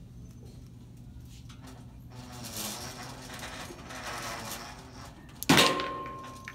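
Cockatoo rummaging among items on a metal store shelf: rustling and scraping from about two seconds in, then a sudden loud clatter near the end with a ringing metallic tone that hangs on.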